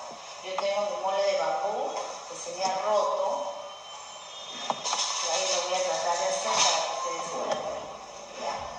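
Indistinct voices talking with music underneath.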